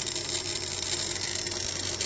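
Small DC motor running steadily at very low power, driven by a 555-timer PWM circuit through a MOSFET, giving a steady low hum.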